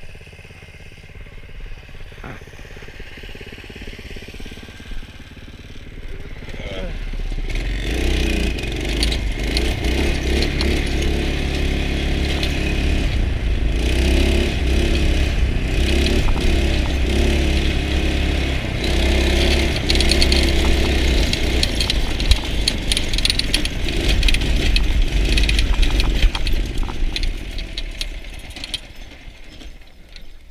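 Small 5–6 hp go-kart engine running as the kart is driven: quieter for the first several seconds, then louder from about seven seconds in, easing off near the end.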